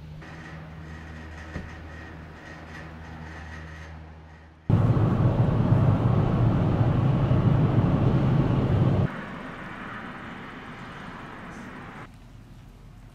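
Low steady hum of a ski chairlift's drive station with a few held tones. About five seconds in it cuts abruptly to loud steady road and engine rumble heard inside a car at highway speed. That stops suddenly about four seconds later, leaving a quieter steady rumble.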